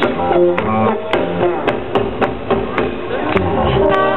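Live funk band playing an instrumental passage with no vocals, the drums keeping a steady beat of about two hits a second.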